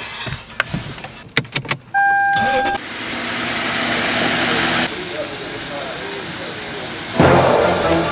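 A few sharp clicks and a short steady electronic beep, then a Lexus sedan pulling away and driving past, its engine and tyre noise slowly growing louder. A loud music beat cuts in near the end.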